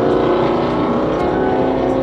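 Car engine and road noise heard from inside the moving car's cabin: a steady drone with a few held humming tones that shift slightly partway through.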